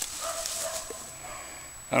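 A faint animal whine in the background: one drawn-out note lasting under a second, near the start.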